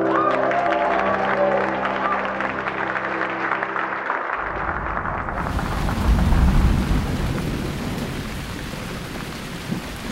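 Applause over music that stops about four seconds in. Then steady rain falls, with a low rumble of thunder around six seconds in.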